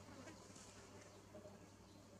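Near silence: faint outdoor background hiss with a steady low hum and a few faint ticks.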